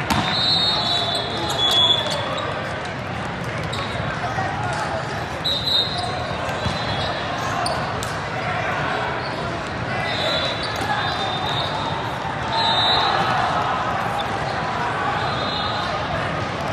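Sports-hall ambience of many voices and court noise in a large reverberant hall, broken about five times by short, steady, high-pitched referee whistle blasts, with a sharp ball hit at the very start.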